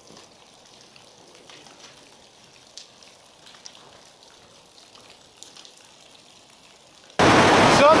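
Meltwater dripping from melting icicles, with scattered faint drips and small ticks of water and ice hitting the ground. Near the end the sound cuts suddenly to loud rushing water.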